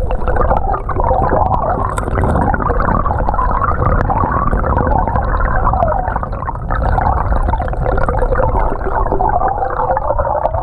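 Creek water flowing and gurgling over a cobble streambed, heard from underwater: a steady, muffled churning over a low rumble, with scattered small clicks.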